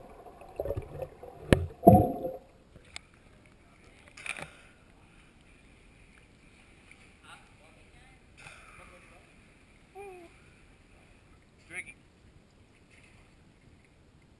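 Muffled water noise and bubbling on a waterproof action-camera housing, with a couple of sharp knocks, for the first two seconds or so. After that it is mostly quiet, with faint, scattered voices and splashes echoing in a water-filled cave.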